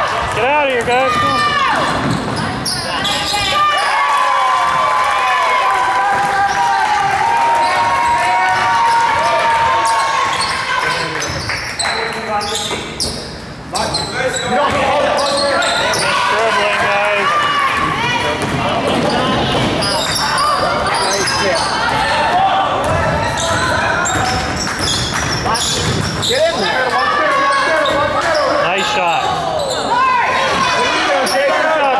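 Basketball game sounds in a large gym: the ball bouncing on the hardwood court, sneakers squeaking and indistinct players' shouts, with the hall's echo.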